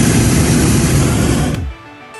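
Hot-air balloon's propane burner firing in one loud, steady blast that cuts off sharply shortly before the end, over background music.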